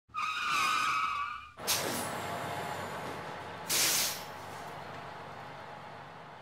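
Sound effects: a high squeal made of a few steady pitches lasting about a second and a half, then a sudden hissing rush that slowly fades, with a short louder burst of hiss near the four-second mark.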